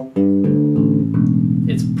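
Six-string Warwick Streamer LX electric bass plucked: a quick run of notes, then a note left ringing from about a second in and slowly fading. A fret wrap sits on the strings near the nut to damp unwanted ringing and deaden the tone toward an upright-bass feel.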